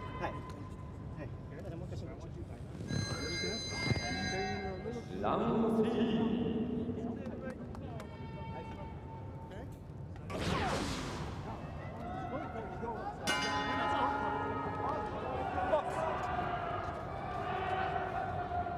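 Boxing ring bell ringing twice, about three seconds in and again about thirteen seconds in, each strike ringing on for a couple of seconds; the second marks the start of round three.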